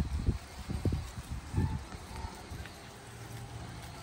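Outdoor wind buffeting the microphone in irregular low rumbles, strongest in the first two seconds and easing later.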